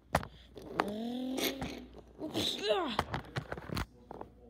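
A voice making wordless vocal sound effects: a held sound about a second in, then a quick falling whoop near three seconds. Sharp clicks come just after the start and near the end.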